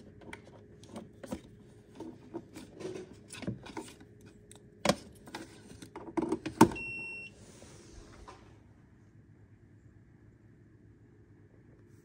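Knocks and clicks of handling as the plug goes into the outlet. Then a single electronic beep of about half a second from the Beautiful 6-quart programmable slow cooker as it powers up, about seven seconds in.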